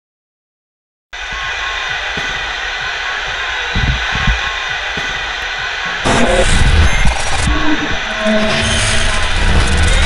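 Title-sequence soundtrack: a loud, dense, steady rushing noise with low thuds that starts about a second in, then turns louder and fuller about six seconds in.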